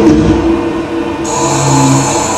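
Live noise music from a Guitarsplat NoiseToy: a loud, dense, distorted drone with held low tones. The hiss on top drops away for about a second, then comes back.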